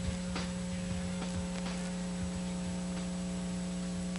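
Steady low electrical hum with a thin high whine and a hiss, and a few faint clicks over it; no music is playing.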